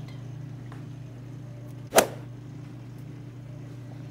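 One short, sharp snap about two seconds in as tape and paper are handled, over a steady low hum.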